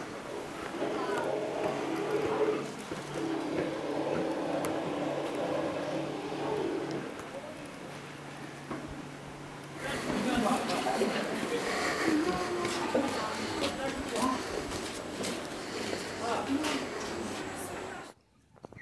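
Indistinct people's voices, with held, voice-like tones in the first half. About ten seconds in the sound becomes louder and busier, a mix of voices and small clicks and knocks.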